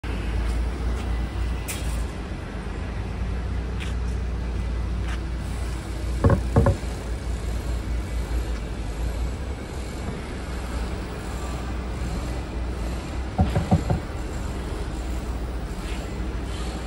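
Urban road traffic: a steady low rumble from buses, cars and electric scooters, with two brief clusters of short sharp sounds, about six seconds in and again near fourteen seconds.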